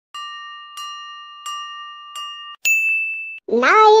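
Electronic chime sound effect: four evenly spaced chiming strikes, about two thirds of a second apart, each ringing on a steady chord, then a single higher, brighter ding. Just before the end a high-pitched, pitch-shifted cartoon voice starts singing.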